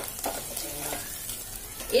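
Green chillies sizzling as they fry in hot oil in a pan, with a few light clicks.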